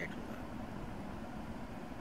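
Steady low rumble and hiss of background room noise, even throughout, with no distinct event.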